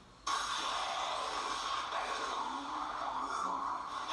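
Anime soundtrack playing back: a steady rushing noise that starts suddenly a moment in and holds at an even level.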